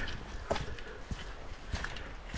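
Footsteps on an earth footpath with timber-edged steps: a few separate knocks, a little under two a second, with a quiet background between them.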